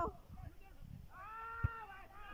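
A volleyball struck once with a sharp smack, about a second and a half in, during a drawn-out high-pitched call that lasts most of a second.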